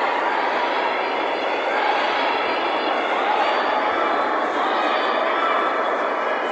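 Crowd of spectators chattering and calling out, a steady din of many overlapping voices.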